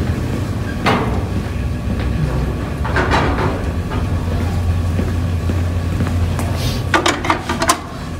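Sharp plastic-and-metal knocks and clatter from handling a planter's seed meter parts: single knocks about a second in and about three seconds in, then a quick cluster near the end as the meter cover is fitted onto the housing. A steady low hum runs underneath.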